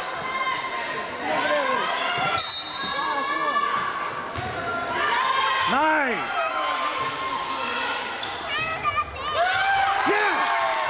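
Players and spectators calling out and shouting in an echoing gym during a volleyball rally, with the sharp thuds of the ball being struck.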